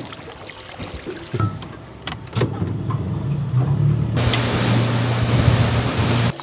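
A boat's motor drones steadily as the boat gets under way, building from about two seconds in. A little after four seconds, a loud rush of water spray and wind from the boat moving at speed comes in over it.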